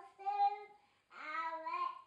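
A young child singing two drawn-out notes with a short pause between them.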